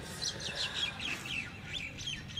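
Birds chirping: a quick run of short, falling high-pitched chirps, several a second.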